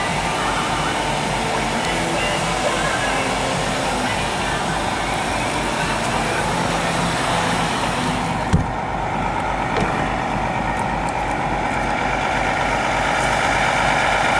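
International MaxxForce 7 diesel engine idling steadily with an even low throb, over the hiss of the bus's air conditioning. A single thump comes about eight and a half seconds in, after which the hiss drops away and the idle is left.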